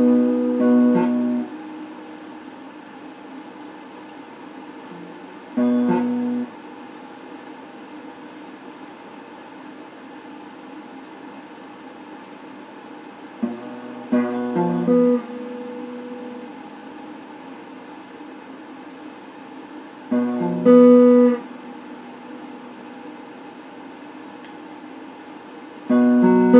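Solid-body electric guitar played in short, separate phrases: chords ring out at the start, then brief bursts of notes about a quarter, halfway and three-quarters of the way through, and again at the end. A steady hiss fills the gaps between phrases.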